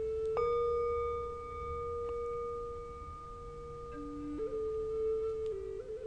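A meditation bell ringing with a long, pure tone, struck again about a third of a second in so that it rings on. About four seconds in, a slow flute melody of held notes comes in beneath it.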